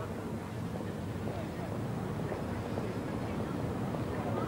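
Street background noise: a steady traffic hum with faint murmuring voices.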